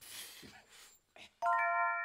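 After a faint hiss, a bright musical chime of several steady bell-like tones sounds suddenly about a second and a half in and holds briefly: the start of the channel's end-card jingle.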